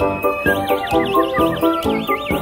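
A high whistle-like tone, held briefly and then warbling quickly up and down in a whinny-like trill, played over a backing track with a steady beat.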